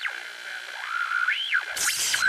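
Synthesized logo-ident sound effect: a sliding electronic tone that drops, holds, then swoops up and back down, followed by a short whoosh near the end.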